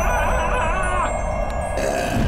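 Magical chiming sound effect with wavering, shimmering tones over a steady low wind-like rumble; the wavering stops about halfway, and a short whoosh comes near the end.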